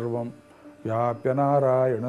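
A man's voice chanting a verse in a steady, held tone, with a short pause about half a second in.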